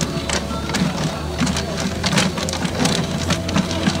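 Paper raffle tickets tumbling and rustling inside a clear acrylic raffle drum as it is turned by hand, a fast irregular patter of paper.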